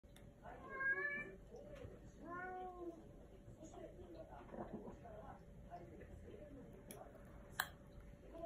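A domestic cat meowing twice, short calls that rise and fall in pitch, about a second in and again about two and a half seconds in. A spoon clinks sharply against a small ceramic bowl near the end.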